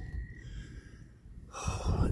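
A faint low rumble, then a man's audible breath near the end.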